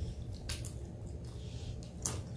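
Soft wet chewing and a few faint mouth clicks from eating a dumpling, over a low steady hum.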